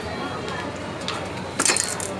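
A short rattling clatter of a clothes hanger knocking against the rack and other hangers as it is worked free, near the end, over steady background chatter.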